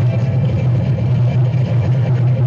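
Steady low rumble of a stampeding bison herd on a film soundtrack, the hoofbeats run together into one continuous roar.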